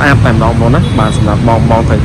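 A man talking without pause over a steady low rumble.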